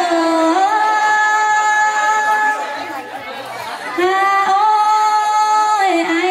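A woman singing a traditional Thái folk song (hát Thái) into a microphone through a loudspeaker, drawing out long held notes with a quieter dip about three seconds in.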